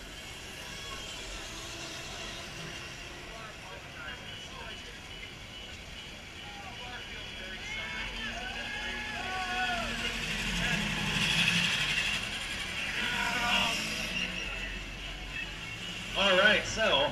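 Small electric power-racing carts running on an asphalt track, their sound building about ten seconds in and peaking a couple of seconds later, over a background of distant voices.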